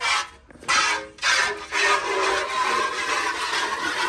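Milk squirting by hand from a cow's teats into a metal pail: a few separate hissing squirts in the first second and a half, then a steady run of quick squirts.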